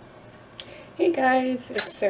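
A woman's voice drawing out a single sound for most of a second in the second half, with a light click just before it and another near the end.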